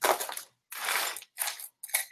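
Rustling and crinkling of packaging as items are rummaged out of a box of jewelry, in four or five short bursts.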